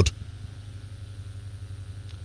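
A steady low hum in a pause between spoken sentences, much quieter than the speech, with no other events.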